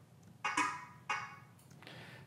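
Three short, soft breath-like puffs from a man pausing between spoken phrases.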